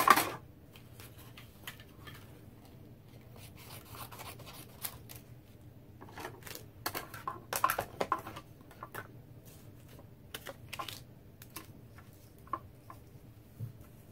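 Clear acrylic cutting plates and cardstock being handled at a manual die-cutting machine: scattered plastic clicks and paper rustles. A sharp clack comes at the start, and a busier run of clicks comes about six to eight seconds in.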